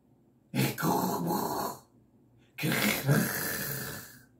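A man's harsh, growled vocal in two rough bursts of about a second and a half each, the second starting about a second after the first ends, with no backing music.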